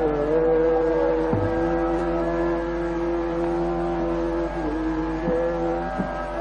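Hindustani classical male vocal in Raga Hamir, holding a long sustained note with brief slides between pitches, over a steady drone accompaniment.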